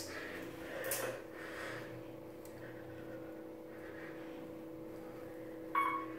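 Steady two-tone hum inside an Otis hydraulic elevator cab, with a short bump about a second in and a brief beep near the end.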